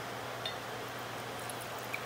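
Pear wine poured from a swing-top glass bottle into a wine glass, faint under a steady low hum, with a couple of light clicks.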